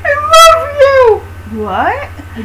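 A child's wordless, high-pitched squeals and cries sliding up and down in pitch: play voices for the plush toy characters. A very shrill squeal comes about half a second in, and a quick rising cry near the end.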